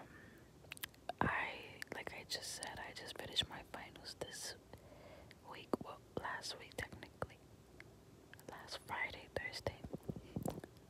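Close-miked whispering in two stretches, with short sharp clicks scattered between the phrases.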